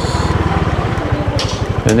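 Small motor scooter engine running at low speed with an even, rapid low beat while being ridden.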